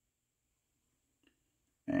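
Near silence: quiet room tone with one faint tick, then a man's voice starts near the end with a drawn-out 'and'.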